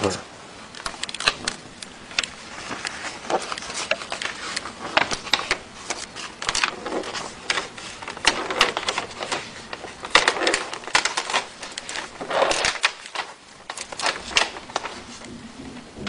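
Plastic laminating film and its paper backing being handled and peeled apart by hand: irregular crinkling and rustling with sharp crackles throughout.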